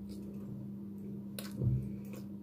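Soft chewing and small mouth clicks of a person eating, over a steady low hum. About a second and a half in there is a sharper click, then a short low hum from the throat.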